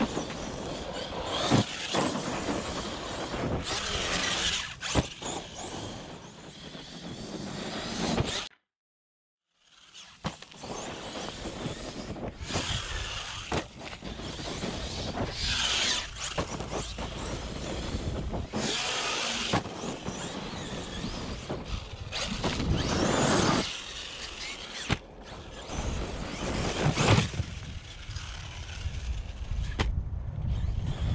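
Electric 1/8-scale Arrma Kraton EXB RC truck running on gravel and dirt: motor and drivetrain whine with tyres scrabbling, rising and falling in surges as it accelerates and lands. The sound drops out to silence for about a second a third of the way in.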